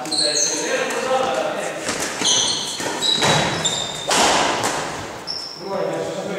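Doubles badminton rally: sharp racket strikes on the shuttlecock and short high squeaks of sports shoes on the wooden hall floor, with players' voices.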